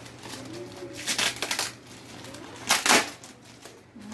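Plastic courier mailer bag being torn open and rustled by hand, in two loud bursts: about a second in and again near three seconds.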